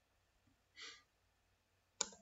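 Near silence, broken by one short soft breath from the narrator a little under a second in.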